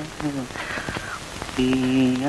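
A man's voice humming a tune in held, slightly wavering notes, with a short pause in the middle before a new note begins. Underneath is the steady hiss and crackle of an old film soundtrack.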